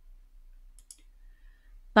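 A pause in speech: quiet room tone with a few faint clicks a little under a second in, then a woman's hesitant 'ähm' begins right at the end.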